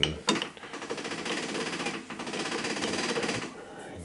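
Hand wheel of a Brown & Sharpe 00 screw machine being cranked by hand, giving a rapid, even run of clicking for about three seconds. Some of the machine's gearing is removed, so the crank does not turn the machine over.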